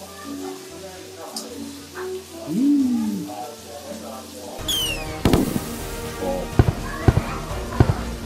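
Background music at first. About halfway in, wagyu beef starts sizzling on a Korean barbecue grill, with a steady hiss and several sharp pops of spattering fat.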